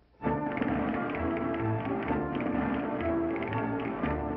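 Cartoon orchestral score with quick tapping notes. It breaks in abruptly after a short gap at the very start.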